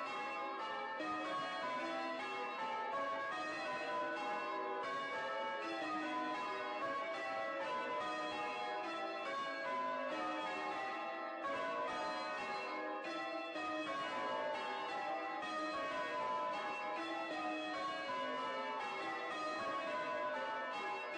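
Church tower bells change ringing: a continuous run of bell strikes, the bells sounding one after another in steadily shifting orders.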